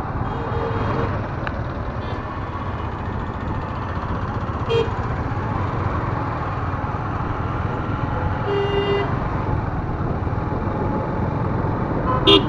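Steady rumble of road traffic and a moving vehicle, with horns tooting: a faint toot near the start, a short sharp one about five seconds in, and a longer one at around eight and a half seconds.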